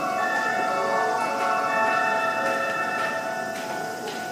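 Electronic railway warning chimes: several bell-like tones held at different pitches and overlapping, which now and then change note, sounding ahead of an approaching train.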